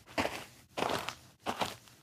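Footsteps walking away at an even pace, about three steps roughly two-thirds of a second apart.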